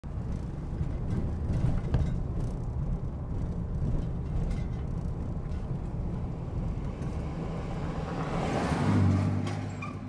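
A car driving on city streets, heard from inside the cabin: a steady low engine and road rumble, swelling briefly louder near the end.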